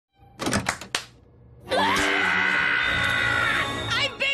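Three or four quick, sharp knocks. Then a cartoon squirrel character lets out one long, loud, terrified scream that rises at the start and holds steady for about two seconds.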